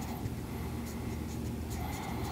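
Dry-erase marker writing a word on a whiteboard, the felt tip drawing steadily across the board surface, quiet.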